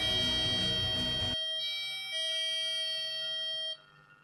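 A BT8031-2S musical IC sounds an electronic 'ding-dong' doorbell chime twice through a small loudspeaker driven by a transistor, then cuts off suddenly near the end. This is the single-play (S) version, which stops after one run until its power is switched off and on again.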